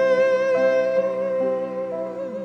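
A song with a long held vocal note, slightly wavering in pitch, over changing chords of accompaniment, tapering off gently.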